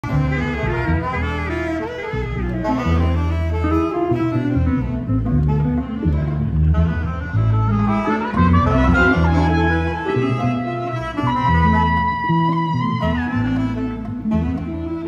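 Live Latin band with a horn section playing through the stage PA in a sound check: saxophone lines over a strong bass line, with a long held note near the end.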